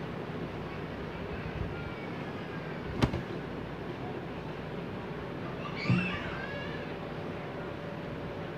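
Cotton fabric being handled and laid out on a sewing table over a steady background noise, with a single sharp click about three seconds in and a brief high, wavering squeak-like sound around six seconds.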